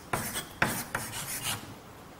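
Chalk writing on a chalkboard: a few short scratchy strokes, each starting with a light tap, stopping about three-quarters of the way through.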